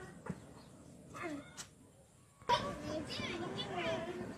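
Indistinct voices of several people talking in the background, with one short knock near the start and a brief quiet gap before the chatter resumes.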